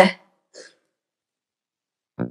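The last syllable of a woman's spoken sentence at the start, a faint short mouth sound about half a second in, then silence.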